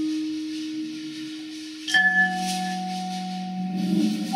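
Slow, sparse ensemble music of long held notes: a low tone fades slowly, and about two seconds in a new chord sounds with a sharp attack and several notes held together.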